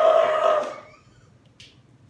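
A person's voice: one loud, drawn-out, steady-pitched vocal sound without words, fading out about a second in. A brief faint rustle follows a little later.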